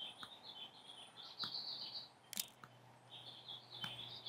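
Birds chirping and twittering in the background, with a single sharp click a little past halfway.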